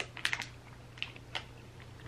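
Close mouth sounds of chewing a soft jelly slug gummy candy: a few short wet clicks and smacks, a cluster at the start and two more about a second in, over a low steady hum.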